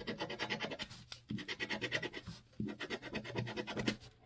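A coin scraping the coating off a scratch-off lottery ticket in quick back-and-forth strokes, in three short bouts, uncovering the winning numbers.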